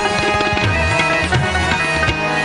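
Instrumental passage of a Pashto ghazal between sung lines: tabla strokes, the low drum bending in pitch, under held melody notes.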